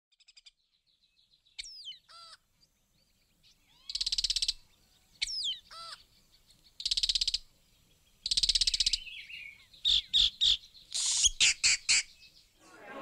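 Birds calling in a series of separate calls: a few whistled, sliding notes, three rapid buzzy trills, and a quick run of short sharp notes near the end.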